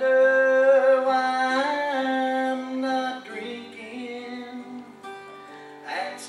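A man singing one long held note over an acoustic guitar; about halfway through the note ends and the guitar carries on under softer singing.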